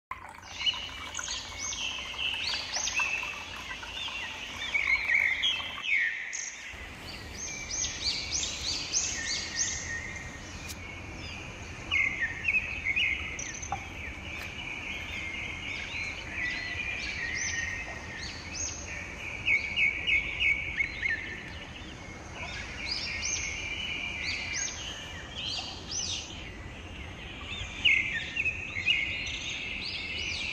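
Songbirds chirping and singing, with many short, high calls and trills overlapping throughout, over a low steady background rumble.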